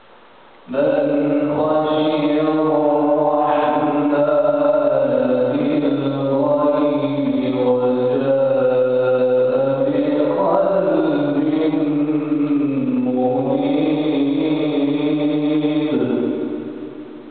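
A solo man reciting the Quran in slow melodic chant (tajwid), through a microphone. The voice enters about a second in and holds one long unbroken phrase, its pitch gently rising and falling, until the end.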